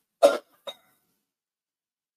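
A single short cough, about as loud as the lecture speech around it, followed half a second later by a faint brief tick.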